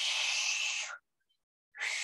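A person breathing heavily through the mouth: two long breaths of about a second each, the second starting near the end, with dead silence between them.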